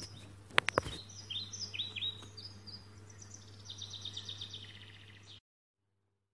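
Small birds chirping in short repeated calls, with a fast twittering trill near the end. Two sharp clicks about half a second in are the loudest sounds, and a steady low hum runs beneath. All sound stops abruptly a little after five seconds.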